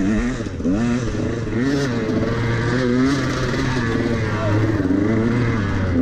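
Dirt bike engine heard from the rider's helmet camera, revving up and down with the throttle at low speed, its pitch rising and falling about once a second.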